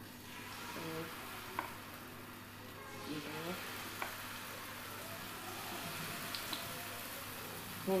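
Steady sizzling hiss from a hot iron tawa, with a few light clinks of a metal spoon against an aluminium pot of batter.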